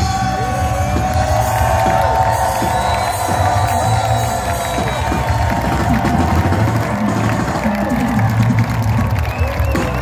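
Live reggae band playing loud through an amplified sound system, with a heavy bass line, as the crowd cheers and whoops.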